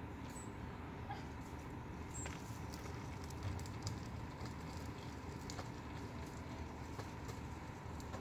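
Longboard wheels rolling on a concrete path, a faint steady rumble with scattered light clicks as the wheels cross pavement joints.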